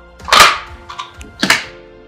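Sharp plastic clicks of Fable robot modules being snapped together, two loud ones about half a second in and a second and a half in, with a fainter click between. Background music plays under them.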